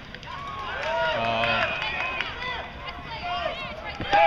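Small ballpark crowd shouting and cheering in many overlapping voices, swelling about half a second in as fans react to a batted ball.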